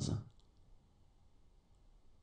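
The last syllable of a voice reading a French number, cut off within the first half second, then near silence: faint room hiss with a few soft clicks.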